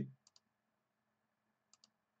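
Computer mouse clicking faintly in near silence: two quick pairs of clicks, one about a third of a second in and one near the end.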